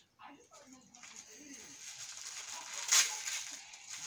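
Crinkly gift wrapping rustling and crackling as it is handled and pulled open by hand, growing louder with a sharp crackle about three seconds in. A faint voice is heard at the start.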